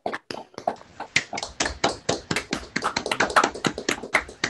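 Applause: several people clapping, a dense, irregular patter of overlapping claps.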